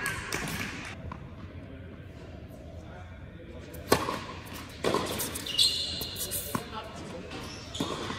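Tennis ball struck by racquets: a serve hit about four seconds in, then a quick run of shots and ball bounces in a large indoor hall.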